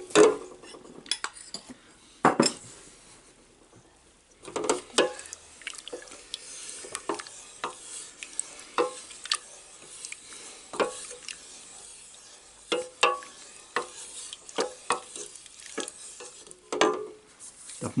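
A wooden spoon stirring cherry filling in a stainless steel pot, scraping and knocking irregularly against the pot, with a short pause about three seconds in. The filling is being thickened with cornstarch as it is brought to the boil.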